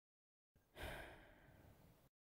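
A person's long breath out, a sigh, starting about half a second in and fading away, then cut off abruptly.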